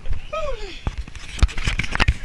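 A short laugh that slides down in pitch, followed by several sharp, irregular thumps and knocks.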